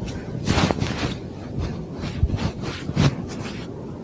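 Fabric bedding rustling: a sleeping bag and pillow scraping and shuffling in irregular surges as someone shifts around in bed.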